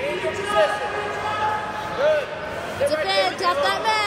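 Spectators shouting during a wrestling match, several voices calling out over one another above a steady crowd murmur.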